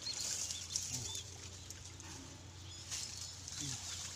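Soft sloshing and splashing of pond water as a man moves about in it, loudest in the first second, with a few faint high bird chirps.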